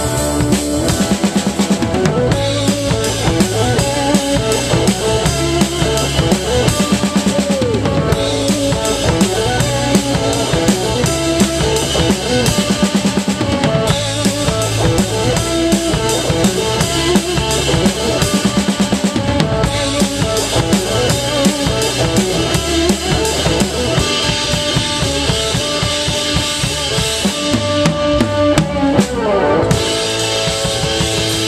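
Rock band playing live with no singing. The drum kit is the loudest part, with bass drum, snare and cymbals close up, and electric guitar behind it.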